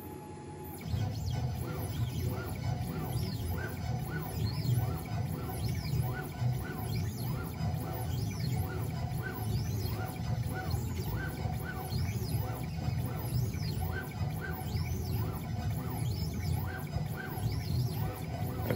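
Onefinity CNC's stepper motors whining in short rising-and-falling tones, about two a second, as the axes speed up and slow down through an air-carve of a 3D toolpath with max jerk set to 1000, over a steady low hum. The motion starts about a second in.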